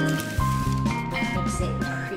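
Background instrumental music with a bass line under short held notes.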